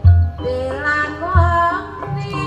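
Live Javanese gamelan music: an ornamented, wavering female vocal line over ringing metallophone tones, with two deep drum beats, one at the start and one about a second and a half in.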